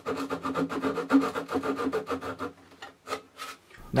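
A small fine-toothed guitar maker's fret saw cuts through masking tape and the hard lacquer and thin wood of a guitar's side in rapid short strokes. The strokes stop about two and a half seconds in, and a few single strokes follow.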